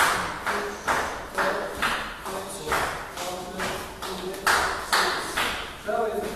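A group of folk dancers stamping their feet in unison on a tiled floor, a steady beat of about two stamps a second, each echoing briefly in the hall.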